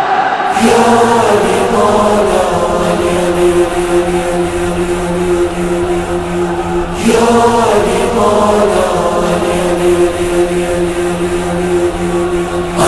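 A crowd of men chanting in unison in two long drawn-out phrases, each rising then held on a steady note. The first starts about half a second in, the second about seven seconds in.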